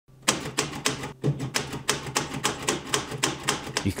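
Manual typewriter being typed on at a steady pace, the typebars striking the paper about three to four times a second, over a low steady hum.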